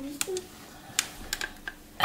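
Buttons on a corded desk telephone being pressed to dial a number: about six sharp clicks at an uneven pace.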